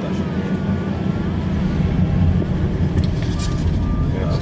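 Steady low rumble of a vehicle driving, with a faint voice underneath in the first second.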